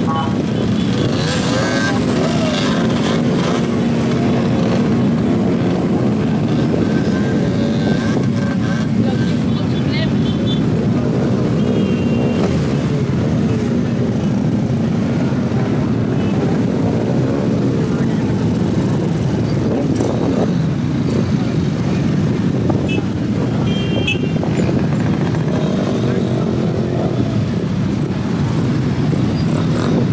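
Many motorcycle and scooter engines running and revving together as a big pack of bikes moves off slowly, their pitches rising and falling over one another.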